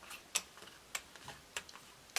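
Playing cards dealt one at a time onto a close-up mat, each card giving a light, sharp tick as it is snapped off the packet and lands, at an irregular pace of a few per second.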